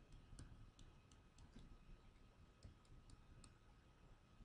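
Faint, sharp clicks of a pen stylus tapping and writing on a tablet screen, about a dozen in irregular clusters, over near-silent room tone.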